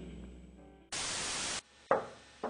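Electric guitar notes dying away, then a sudden burst of hissing static lasting under a second that cuts off sharply, followed by a short click near the end.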